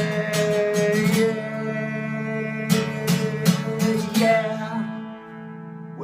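Acoustic guitar strumming the closing chords of a song, with a sung note held through the first second. The last chords ring on and fade near the end.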